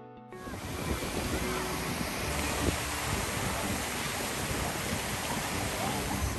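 Guitar music cuts off a moment in, and a steady rushing hiss of water fountains spraying and splashing down into a pool takes over.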